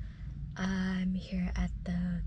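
A woman speaking quietly, over a low steady rumble inside a car.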